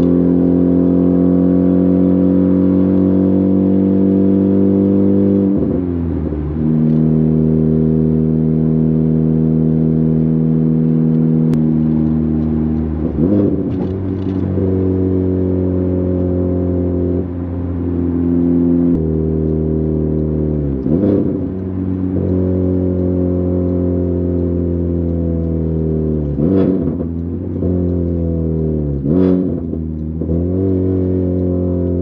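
Honda Civic Type R FK8's turbocharged 2.0-litre four-cylinder heard from inside the cabin through a catless downpipe and front pipe: a loud, steady drone with the revs slowly falling as the car slows. Several times the drone breaks off for a quick throttle blip, the heel-toe rev match of a manual downshift.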